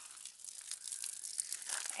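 Faint splashing of water pouring from a plastic watering can onto the soil and sweet potato leaves, a soft steady crackly spatter.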